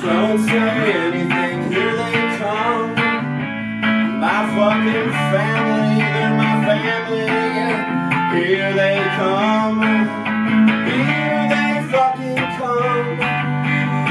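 Electric guitar played through a small combo amplifier: sustained low notes under higher notes that bend up and down in pitch.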